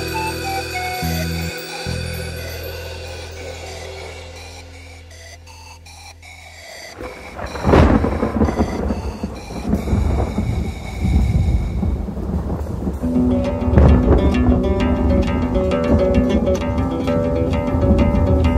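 Andean music fades down over the first six seconds. Then a thunderclap cracks about eight seconds in, and rumbling thunder and rain follow. The music comes back in under the storm in the second half.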